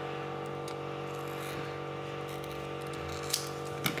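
Scissors cutting a soft thermal pad sheet, with a couple of faint snips near the end, over a steady low electrical hum.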